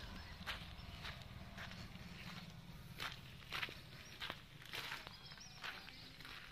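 Faint footsteps at a steady walking pace on a sandy concrete floor.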